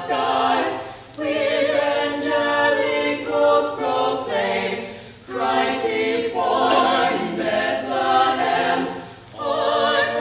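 Mixed choir of male and female voices singing unaccompanied in sustained chords, the sound dropping away briefly between phrases about a second in, around five seconds in, and near the end.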